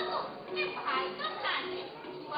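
Spoken stage dialogue between actors in a play.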